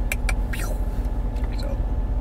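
Steady low rumble of a car idling, heard from inside the cabin, with a few light clicks near the start.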